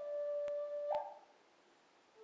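A flute holding one steady note, stepping up to a short higher note about a second in, then fading out into near silence.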